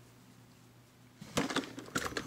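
A faint steady hum, then about 1.3 s in a quick cluster of sharp knocks and clatter as the robot vacuum's hard plastic body is handled right by the microphone.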